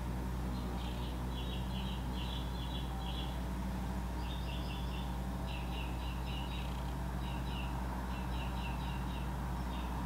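Bird chirping in quick runs of high notes, a run about every second, over a steady low hum.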